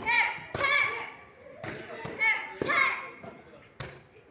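Taekwondo kicks slapping against handheld kick pads, about five sharp strikes roughly a second apart. Each strike is followed closely by loud young voices shouting.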